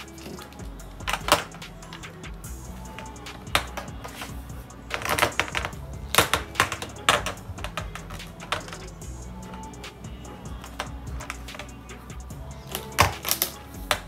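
Brown PVC pipes clicking and knocking against a glass tabletop as they are handled and fitted into elbow joints, in irregular clusters, over background music.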